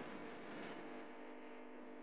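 Faint background music holding a steady chord.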